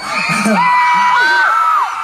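Audience cheering and screaming, several high-pitched voices holding long overlapping screams that drop off near the end.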